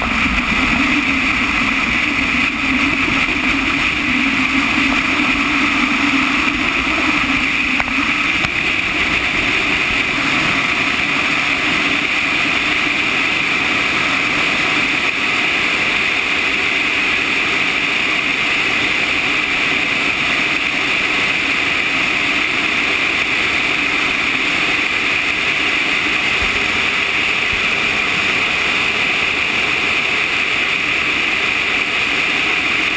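Steady wind rush over the outside-mounted camera of a sailplane under aerotow, with a lower rumble that drops away about eight seconds in.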